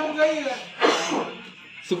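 Men's voices with music behind them, and a single sharp click a little under a second in.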